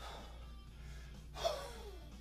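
A man's short, forceful exhale, loud with a falling pitch, about one and a half seconds in, as a 32 kg kettlebell is lowered from overhead into the rack during one-arm jerks. Background music plays steadily underneath.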